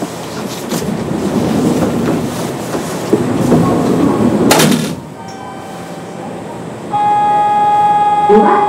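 Station platform sounds around a standing Kintetsu 8800 series train: a rumbling noise for about five seconds, broken by a short, loud hiss-like burst about four and a half seconds in. After a quieter moment, a steady electronic bell tone starts about seven seconds in, the signal that the doors are about to close.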